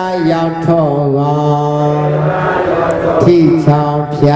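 A Buddhist monk's voice in sing-song chanting recitation, holding long notes that glide slowly in pitch, with a new phrase starting near the end.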